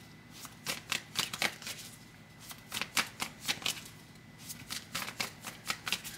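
A deck of tarot cards being shuffled by hand: quick crisp snaps of cards in three runs, with short pauses between them.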